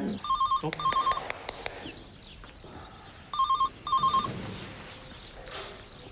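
Mobile phone ringing with an electronic warbling trill: two short trills, a pause of about two seconds, then two more.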